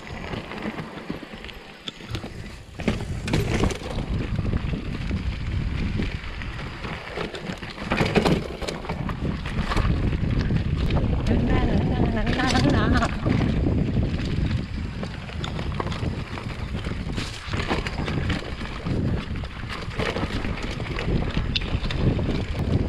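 Mountain bike descending rough singletrack: tyres rumbling over dirt, roots and stones, with the bike rattling and knocking over the bumps.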